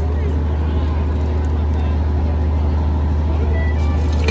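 Large generator set running with a steady, deep drone that does not change, under faint crowd chatter.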